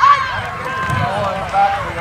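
Several people's voices overlapping, shouting and calling out with no clear words: spectators and coaches at a youth football game.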